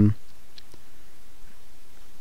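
Two faint clicks of a computer mouse over quiet room noise.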